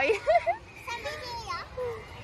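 Young children's voices: short bursts of high-pitched chatter and calls, with brief pauses between them.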